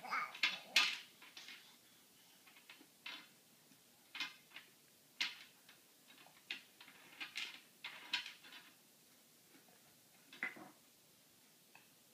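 Wooden toy pieces clacking as a baby handles a wooden activity cube with a bead maze: scattered sharp clicks and knocks, a quick cluster in the first second, then single clacks or short runs every second or so.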